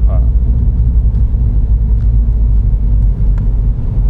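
Low, steady in-cabin rumble of a 2016 MINI John Cooper Works six-speed manual on the move: engine, exhaust and tyre noise together as it drives slowly in traffic.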